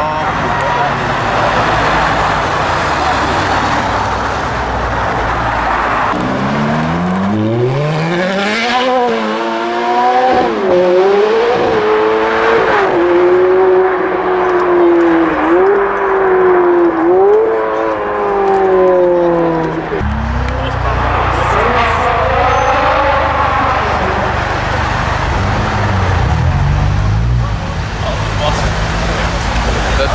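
Sports car engines accelerating past on a road. From about six seconds in, one engine revs hard, its pitch climbing and dropping over and over through gear changes for about thirteen seconds until it cuts off suddenly. More passing traffic follows, with a shorter rev.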